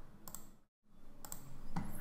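A few faint computer mouse clicks, pairs of sharp clicks about a second apart, with a brief dead gap in the sound just before the middle.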